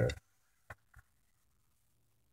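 The last of a spoken word, then one short sharp click about three-quarters of a second in and a fainter tap just before the one-second mark, followed by a very faint low hum.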